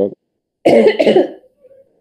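A person coughing once, loudly, for about half a second, starting about half a second in.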